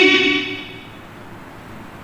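A man's voice through a microphone and loudspeakers trails off at the end of a phrase, then a pause of about a second and a half holds only low, steady room noise.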